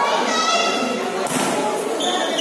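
A volleyball struck by a player's hand, one sharp thump a little over a second in, over the continuous voices and shouts of players and spectators.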